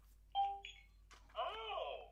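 A short electronic chime from the Wonder Workshop Cue robot, two steady tones with a higher ring, followed about a second later by a brief warbling robot sound effect.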